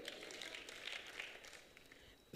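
Near silence: faint room noise that fades out toward the end.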